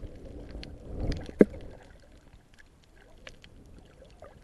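Water swirling against an underwater camera, with a low rumbling swell about a second in and a sharp loud knock just after it. Faint scattered clicks crackle throughout.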